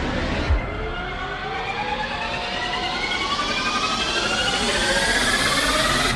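A rising suspense sound effect: several tones glide steadily upward together and grow louder for about five seconds, then cut off abruptly. A brief thump comes about half a second in.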